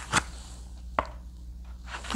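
Two short, sharp clicks, one just after the start and one about a second in, as a thick paperback workbook is handled and its pages shifted, over a faint steady low hum.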